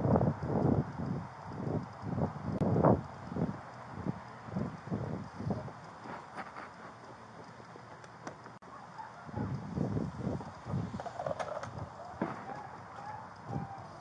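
Footsteps of a person walking, picked up on a body camera's microphone along with rustle of clothing and gear. They come as rhythmic thumps about two a second, strong at first, fading after a few seconds and picking up again near the end.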